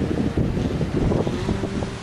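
Wind buffeting the microphone of a handheld camera: a rough, low rumble that comes and goes in gusts.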